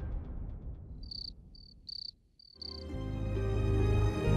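Background music fades out, then a cricket chirps about five times in short high bursts, before low, sombre music swells in near the end.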